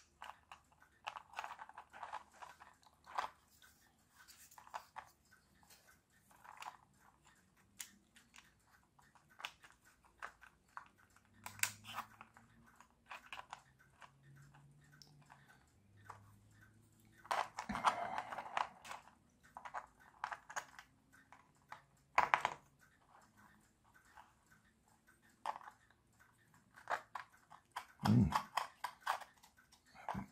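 3D-printed plastic gears and frame parts of a wind-up toy car being handled and fitted together: scattered light clicks, taps and rattles, with a longer clattering burst a little past halfway and a sharp click a few seconds after it.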